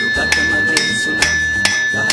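Blacksmith's hand hammer striking a steel blade held in tongs on an anvil, a steady beat of about two blows a second. Each blow rings brightly, and the ring carries on between blows.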